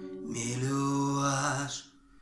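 A man singing one long held note over a small nylon-string guitar, the note fading out just before the end.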